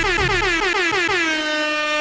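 DJ-style air horn sound effect: a rapid string of short blasts, then one long held blast.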